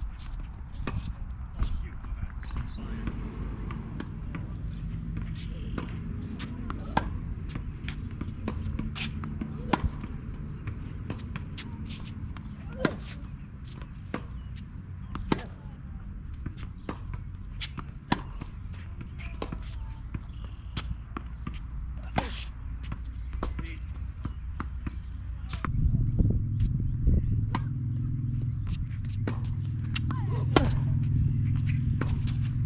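Tennis rally on a hard court: sharp knocks every second or two as racquets strike the ball and it bounces, over a steady low background rumble that grows louder near the end.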